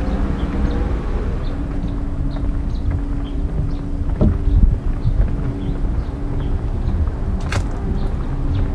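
Steady low rumble and hum of road traffic, with faint short high chirps scattered through it and a single sharp click about seven and a half seconds in.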